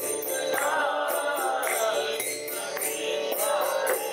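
Devotional kirtan: a man chanting a mantra melody, accompanied by a mridanga barrel drum and a steady jingling beat of small metal percussion at about three strikes a second.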